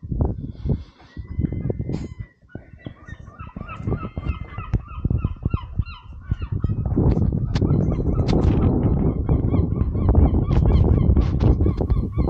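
Birds calling over and over in short, repeated calls, joined about halfway through by a loud, steady low rumble.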